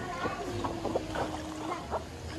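A baby making a long, even vocal sound for about a second, with light splashes of pool water near the start and end.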